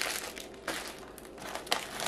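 Plastic wrapping on frozen food packages crinkling and rustling as they are handled and set down, with a couple of sharper crackles.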